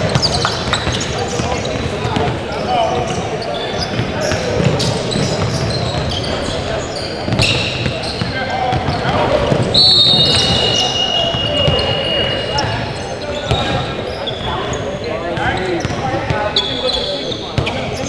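Indoor basketball game in a large gym: the ball bouncing on the hardwood, sneakers squeaking and players and spectators calling out, with the sound echoing around the hall. About ten seconds in, a high steady tone, a referee's whistle stopping play.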